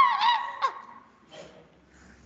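A high-pitched, wavering vocal cry lasting about a second, sliding up and down in pitch and then fading out.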